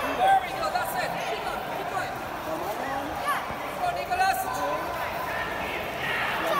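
Several onlookers' voices overlapping, shouting and chattering, with a few short sharp knocks among them.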